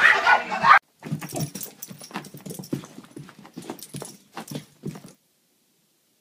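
Music with singing that cuts off under a second in, then a dog giving many short, irregular yaps and barks for about four seconds before the sound stops.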